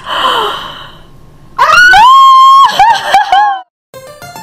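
A young child's breathy gasp, then a long, very loud, high-pitched squeal of excitement that holds one note and breaks into several shorter cries before stopping abruptly near the end.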